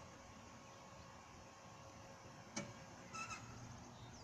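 Near silence with a faint outdoor background, broken by one sharp click about two and a half seconds in and a brief, faint high squeak just after.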